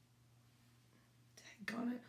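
Quiet room tone for over a second, then a short breathy sound and a brief bit of a woman's speech near the end.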